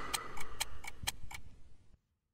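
Clock-like ticking, about four sharp ticks a second, fading out as the beatbox track ends.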